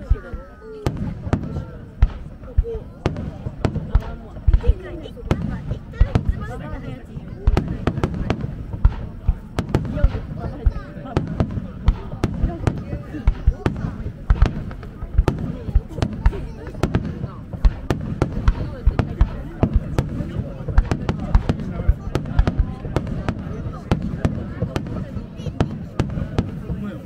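Aerial firework shells bursting in the sky, a rapid string of sharp bangs, several a second, all through the display.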